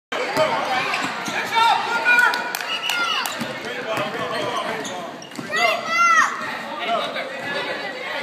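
Basketball bouncing on a gym floor amid voices calling out in an echoing hall, with short high squeals throughout and a loud burst of them about six seconds in.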